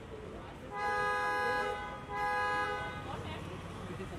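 A car horn honks twice: a held blast of almost a second, then a shorter one about half a second later, both at one steady pitch, over low street noise.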